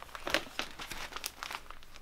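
Large photographic prints being handled and flipped over, the sheets rustling and crinkling in a run of irregular crackles.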